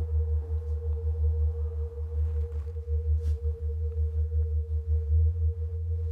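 A steady single-pitch drone held without a break over a loud, deep rumble that swells and dips unevenly.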